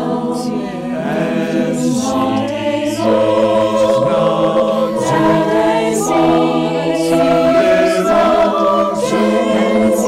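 A small group of voices singing a cappella in harmony, a short repeated phrase, growing louder about three seconds in.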